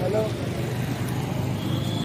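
Steady outdoor street noise, a haze of traffic with faint distant voices, cutting off suddenly at the end.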